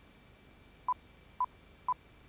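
Three short electronic beeps at one steady pitch, about half a second apart, in the second half: a countdown-timer sound effect, over faint tape hiss.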